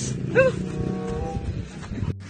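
A short, high yelp-like cry that rises and falls about half a second in, followed by music with a few held notes.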